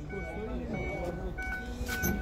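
Indistinct background voices over a low steady hum, with a thin, high-pitched tone that sounds briefly again and again.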